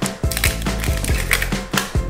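Thin plastic sleeve label crackling as it is torn and peeled off a plastic yogurt-and-toy egg container, a quick run of small crackles and clicks.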